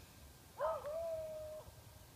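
A single high-pitched vocal sound, held at a steady pitch for about a second after a wavering start.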